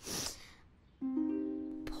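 Soft plucked ukulele-like notes in a cartoon music cue: two notes struck about a second in, one just after the other, ringing on and slowly fading. A brief breathy hiss comes at the very start.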